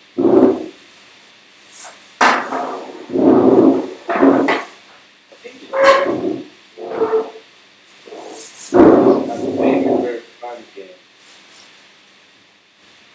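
A young child's voice in a run of loud, short vocal bursts with quieter gaps between them, the loudest about nine seconds in.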